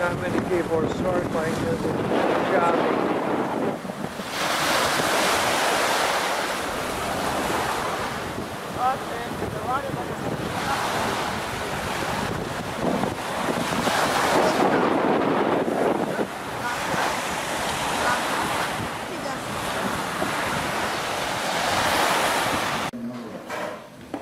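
Surf washing onto a sandy beach, swelling and easing every few seconds, with wind on the microphone. It stops abruptly near the end.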